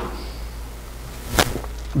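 A single sharp click or snap about one and a half seconds in, followed by a couple of faint ticks, over a steady low hum.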